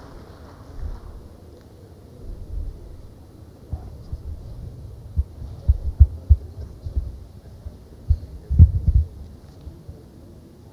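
Irregular low thuds and bumps, several of them about five to six seconds in and a louder cluster near nine seconds, over a faint room background.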